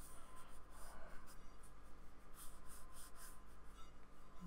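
A small paintbrush scratching and dabbing acrylic paint onto sketchbook paper in a series of faint, short strokes, coming quickest a little past halfway.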